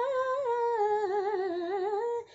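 A young woman singing unaccompanied, holding one long sung note that slides down in pitch about a second in and wavers with vibrato in its second half.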